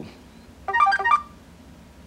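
Smartphone notification chime: a quick run of short electronic notes, about half a second long, sounding just under a second in as a doorbell alert arrives on the phone.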